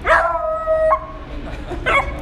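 Four-month-old beagle puppy barking: one long drawn-out bark that rises and holds its pitch for nearly a second, then a second bark starts near the end.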